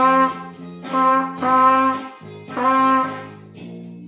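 Pocket trumpet played by a beginner working through a simple exercise: about four separate held notes near the same pitch, each swelling and fading, with short gaps between them.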